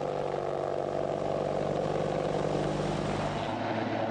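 AH-64 Apache attack helicopter hovering, its turbine engines and rotor running with a steady hum made of several held tones.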